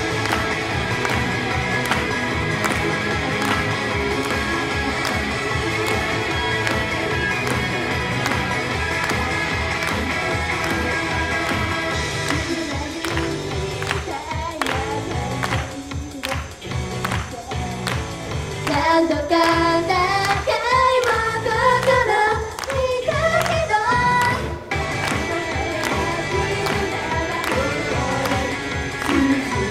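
A girl idol group's pop song: several young women sing into microphones over a backing track with a steady beat, played through PA speakers. The backing thins out and drops in level for a few seconds near the middle, then a louder sung passage follows.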